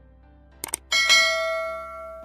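Two quick mouse-click sound effects, then a bright bell ding that rings and fades over about a second: the notification-bell sound of a YouTube subscribe-button animation.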